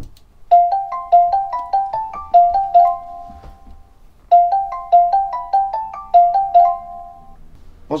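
Ringing tone of an outgoing voice call: a short melody of quick notes, played twice with a pause between.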